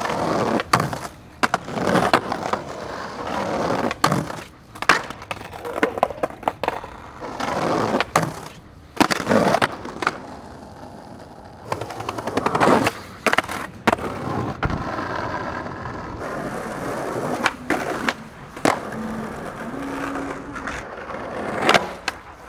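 Skateboard wheels rolling on pavement and concrete, broken by sharp clacks of the board popping, landing and striking ledges and banks, several times over.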